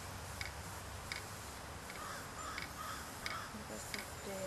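Sharp, even ticks about every 0.7 s, typical of an impact sprinkler watering the green. A bird calls a few times in the middle.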